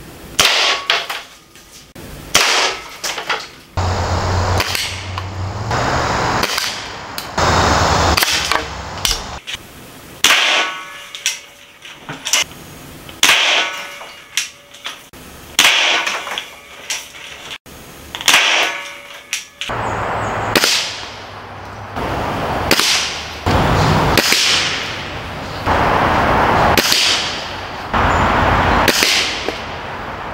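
Break-barrel air rifles firing pellets, shot after shot, a second or two apart, with longer noisy stretches between some of the shots.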